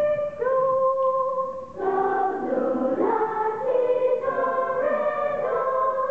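Voices singing a cappella: one high voice holds notes that step up in pitch, then a little under two seconds in, several voices come in together on different notes in harmony.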